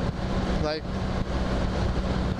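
A 1983 Honda V65 Magna's 1,100 cc V4 engine running steadily at cruising speed, a low even hum under a steady rush of wind noise.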